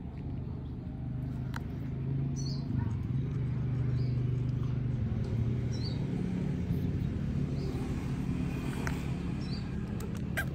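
Steady low hum of a running motor, a little louder from about two seconds in, with faint short high chirps every second or two and a few soft clicks.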